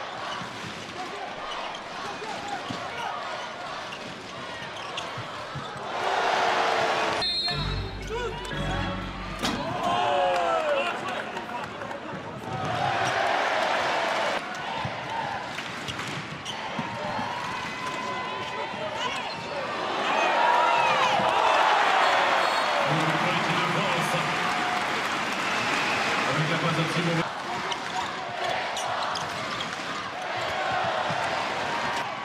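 Handball ball bouncing on the indoor court during play, under a crowd that keeps up a steady noise and cheers louder several times, loudest in a long swell past the middle.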